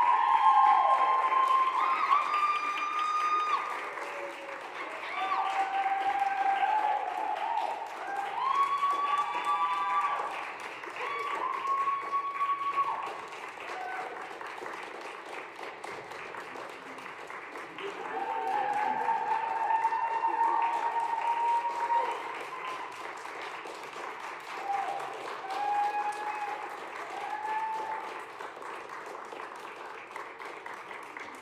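Audience applauding, with voices cheering and whooping over the clapping several times; the clapping swells and fades in waves.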